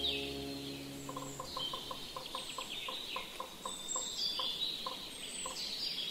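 Birds singing, with high chirps and trills throughout, and a short repeated low call about four times a second from about one second in until a little past five seconds. Sustained music tones die away in the first second or so.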